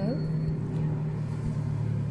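A steady low hum, like a motor running, held at an even pitch.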